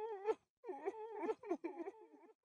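A quiet, high, wavering wail in a voice-like tone, broken into several short phrases with brief gaps.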